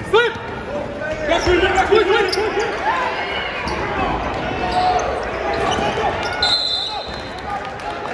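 Basketball game sounds in a gym: sneakers squeaking on the hardwood, the ball bouncing, and players and crowd shouting. A short steady whistle blast comes late, as play stops on a loose-ball scramble.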